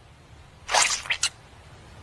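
Short cartoon sound effects: one noisy swish-like burst about three quarters of a second in, then two quick short blips.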